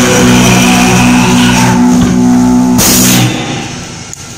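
A live rock band plays loud electric guitar over drums, holding a sustained chord. About three seconds in, the song ends on a final hit and the sound drops away sharply.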